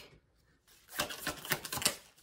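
Tarot cards being handled: a quick run of sharp clicks starting about a second in and lasting about a second.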